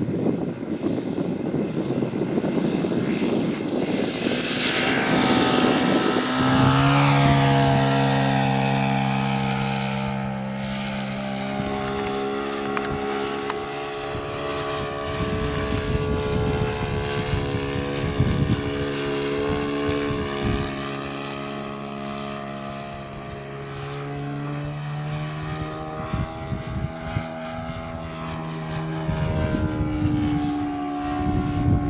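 Saito 100 four-stroke glow engine of a large radio-controlled J3 Cub at high throttle during takeoff: a rough, noisy rush whose pitch drops as the plane passes close about four to six seconds in, then a steady, even engine note as it climbs away and flies around.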